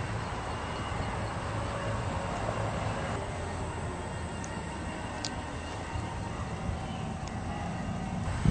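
Steady low rumble of outdoor vehicle background noise, with a faint click about five seconds in.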